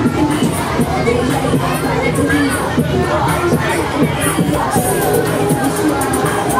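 Riders on a Fabbri Kamikaze 3 swinging ride screaming and shouting over loud ride music.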